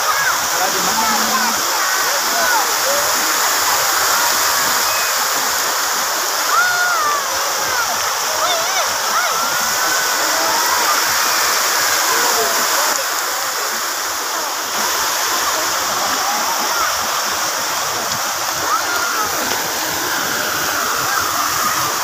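Many water jets of a lake fountain shooting up and falling back, a steady rush and splash of water. Overlapping chatter from a crowd of onlookers runs under it.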